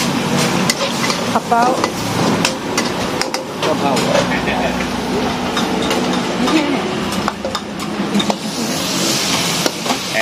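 Yellow wheat noodles sizzling in a wok over a high gas flame, with a metal utensil scraping and knocking against the wok many times as the noodles are tossed in a fast stir-fry.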